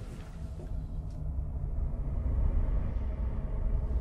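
A deep, low rumble that swells steadily louder, with hardly any higher sound above it.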